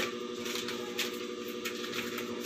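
Paper banknotes rustling as they are flicked through and counted by hand, a few short crisp rustles over a steady background hum.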